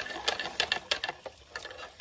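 Thin metal rod stirring water in a small plastic bucket, clicking against the sides at about five clicks a second, thinning out and fading about a second in.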